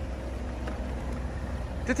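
Steady low background rumble of outdoor ambience, with no distinct sound event; a man's voice starts right at the end.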